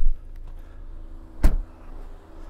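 Faint steady hum with one short, sharp knock about one and a half seconds in.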